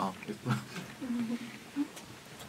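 A man's short, low wordless murmurs and mouth noises, four or five brief sounds in a row, made while eating.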